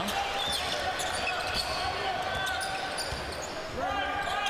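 A basketball being dribbled on a hardwood court, a run of short thuds, over the steady murmur of an arena crowd.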